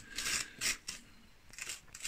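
A spoon scraping seeds and stringy pulp out of a halved raw winter squash, in a few short, rasping strokes.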